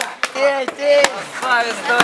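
Skateboard deck clacking and knocking on pavement several times as a trick is tried, with young people shouting.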